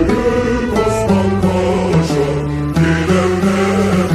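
Background music: sustained melodic notes over a low bass line that changes note about every half second.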